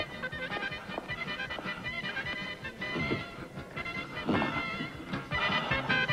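Liscio dance orchestra playing a lively polka, heard faintly in the background, much quieter than on the dance floor.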